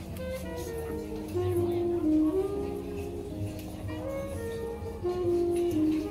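Instrumental jazz: a saxophone melody of held notes over a low bass line.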